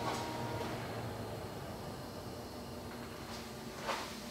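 Electric-car charging noise in a garage: a steady tone and low hum from a charging Tesla Model Y shut off within the first second or so and the sound drops, leaving only the quieter steady charging noise of a Tesla Model 3. A short knock near the end.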